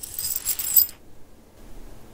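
A brief, high metallic jingle with ringing tones, lasting under a second and stopping abruptly, then faint room sound.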